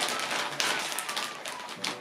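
Plastic treat bag crinkling and rustling as it is handled, in a run of quick, irregular crackles.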